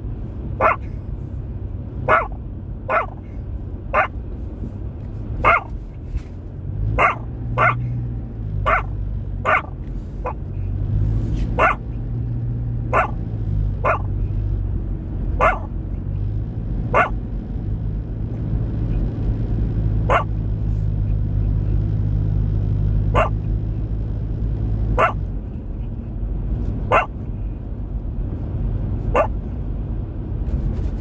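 A dog barking in short single barks, every second or so at first and more spread out later, over the steady low rumble of a car driving.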